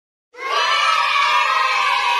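A group of children shouting a long, drawn-out "hello" together, starting about a third of a second in and held steadily.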